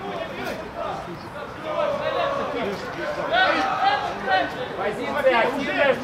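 Shouted calls from players and coaches during a football match, several male voices overlapping, growing busier from about two seconds in.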